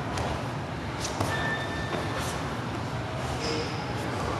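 Scuffing and rustling of two grapplers rolling on foam mats over steady room noise, with a sharp knock about a second in.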